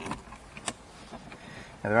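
Faint clicks and scrapes of a Phillips screwdriver undoing a screw in a plastic dashboard fascia, with one sharper click a little under a second in.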